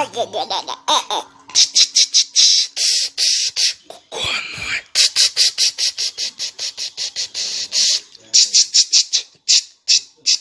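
A child's voice in rapid breathy bursts, about five a second, like a "ch-ch-ch" sound effect or breathless laughter, with a short squeal about four seconds in.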